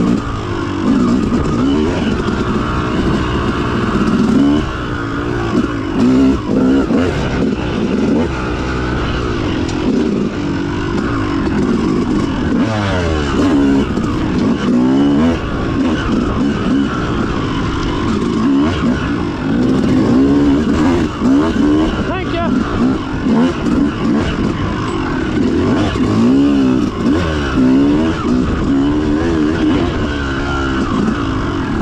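Dirt bike engine being ridden on a woods trail, revving up and down over and over, its pitch rising and falling with the throttle and gear changes.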